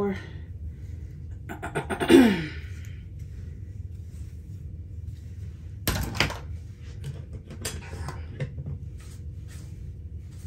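A woman clears her throat about two seconds in. A few sharp knocks and clatters of handled objects follow, near six seconds and again around eight, over a steady low room hum.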